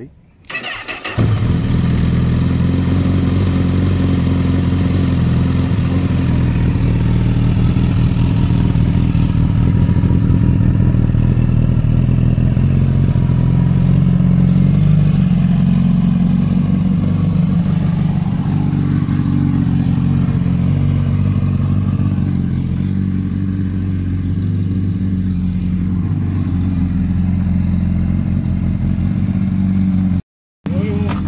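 Honda CBR1000RR Fireblade inline-four with an Akrapovič carbon exhaust starting about a second in, then idling steadily.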